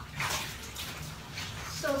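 Coats soaking in a bathtub being worked by gloved hands: irregular sloshing and swishing of wet fabric in the water. A short spoken word comes at the very end.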